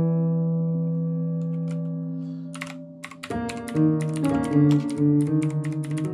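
Computer keyboard keys clacking as they are typed, each keystroke triggering notes from a software piano in Ableton Live. A chord rings and slowly fades over the first three seconds with a few key clicks; then a burst of rapid typing sets off a quick run of new notes and chords.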